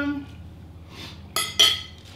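A fork clinking twice against a plate, two quick ringing taps about a second and a half in.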